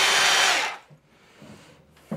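A DeWalt cordless SDS drill with a clip-on dust-extraction unit running on the end of drilling a hole in a block wall, then winding down and stopping under a second in. A few faint handling knocks follow.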